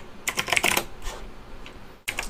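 Typing on a computer keyboard: a quick run of keystrokes in the first second, then a few scattered key presses.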